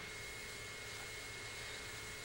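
Steady hiss of analog camcorder tape noise, with a thin, steady high whine and a low hum underneath.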